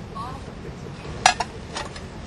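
A knife and china crockery being handled, giving three sharp clinks, the first the loudest and the last two fainter.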